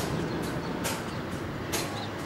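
Steady rumble of distant road traffic, with two short hissing bursts.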